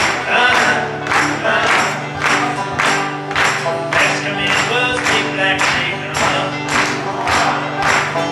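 Live acoustic folk music: an acoustic guitar strummed and a banjo picked together in a steady, evenly spaced beat.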